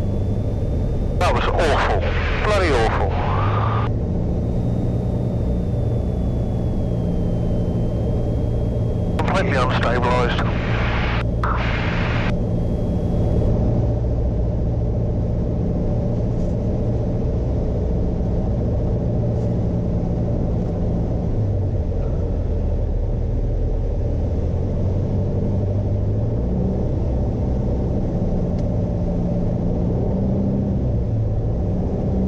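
Piper Warrior II's four-cylinder Lycoming engine droning steadily inside the cockpit on approach to land, its note shifting slightly in the second half. Two short bursts of a voice cut across it, about a second in and about nine seconds in.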